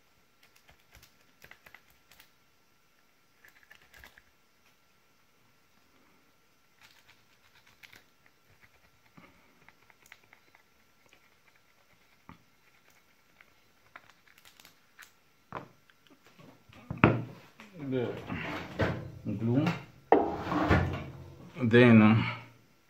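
Faint, scattered scratching and light clicks of a plastic pry tool scraping along 18650 lithium-ion cells to strip glue and wrapping. In the last few seconds a man's voice is louder than everything else.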